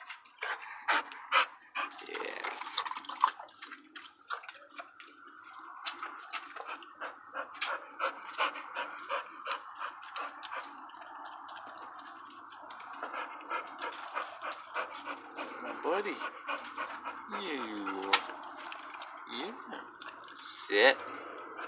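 A dog panting steadily while being rubbed, with many short clicks and rustles of hands on fur and clothing. Near the end come a couple of short wavering whines.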